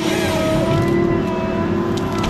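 Heavy logging machine's diesel engine running steadily under load, with a hydraulic whine that shifts slightly in pitch.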